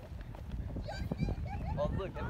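Distant voices calling out across an open field, starting about halfway through, over a steady low rumble.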